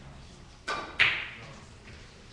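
A single sharp knock about a second in, much louder than anything else and with a short ringing tail.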